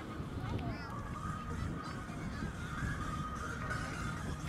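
Large wood-pile bonfire burning with a steady low rumble, with a run of honking calls, like geese, over it from about a second in.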